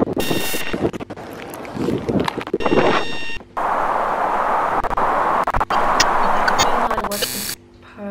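Audio of a played-back vlog: short buzzy electronic tones near the start, about three seconds in and near the end, with a stretch of steady, loud hiss in the middle.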